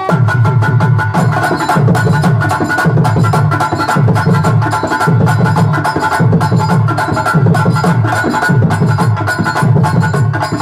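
Live stage band playing fast instrumental dance music: drums and tabla carry a low beat pulsing a little faster than once a second under quick, sharp percussion hits, with steady held notes above.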